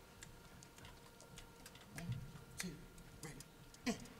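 Quiet pause in a concert hall: scattered faint clicks and soft shuffles from a band settling on stage, over a faint steady room hum.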